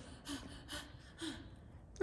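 A person's faint, short breaths, three in quick succession about half a second apart, over quiet room tone.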